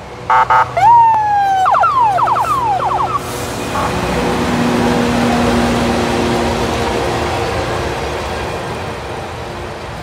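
Loram switch grinder train giving two short toots, then a loud warning that slides down in pitch and breaks into quick repeated downward sweeps as it approaches. From about three seconds in, its engines and wheels make a steady heavy rumble as it passes close by, easing off slowly near the end.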